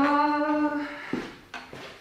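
A man humming one long note that rises at first and then holds, fading out about a second in, followed by two light knocks.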